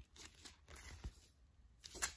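Faint rustling and scraping of a paper inner sleeve sliding out of a cardboard LP jacket, with a few light clicks and a brief sharper scuff near the end.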